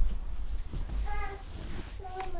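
A baby giving one short pitched vocal cry about a second in, lasting under half a second, over a low rumble of handheld-camera handling noise.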